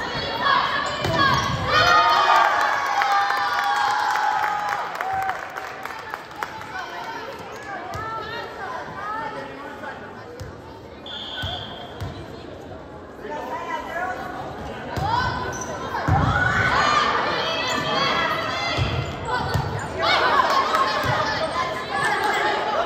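Volleyball play in a gymnasium hall: the ball struck and hitting the floor, with players calling out and spectators shouting and cheering, all with the hall's echo. A short high whistle about halfway through, with a quieter stretch around it.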